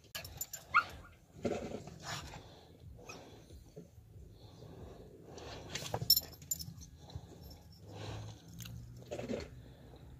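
A husky making short, scattered vocal sounds a second or more apart, the sharpest about a second in and again past the middle.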